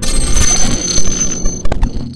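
Intro sound effects for a glitching logo animation: a high, steady ringing tone over static-like noise, broken by a few sharp glitch clicks about one and a half seconds in, then fading out.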